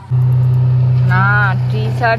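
Engine of a tree surgeons' towed wood chipper running, a steady low drone that comes in loud just after the start.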